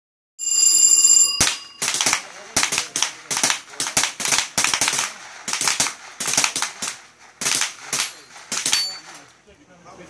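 An electronic shot-timer beep for about a second, then a rapid string of about twenty shots from a Ruger 10/22 semi-automatic .22 rimfire rifle, roughly two or three a second, each with a short ring after it. The shots stop about nine seconds in.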